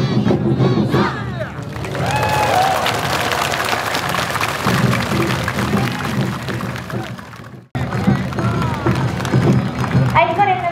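Awa Odori festival band music with dancers' shouted calls. About two seconds in it gives way to a crowd cheering and applauding, which fades away. After a sudden break near the end, the band music and calls start again.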